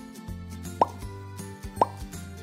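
Light background music with a short, rising 'plop' sound effect about once a second, heard twice: a quiz countdown ticking off the thinking time.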